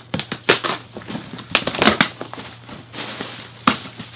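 Cardboard box being torn open and white packing material pulled out of it, crinkling and rustling with several sharp crackles.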